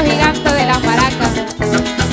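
Venezuelan llanero joropo played by a harp, cuatro, maracas and bass, with the maracas keeping a steady rattling beat under the plucked strings.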